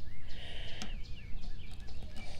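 Songbird calls: a quick run of short chirps and warbled notes, with a brief click about halfway through.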